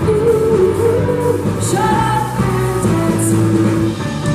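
A woman singing lead vocals into a microphone over a live rock band, with a steady bass line and drums, amplified through a PA; her melody jumps up to a higher note about two seconds in.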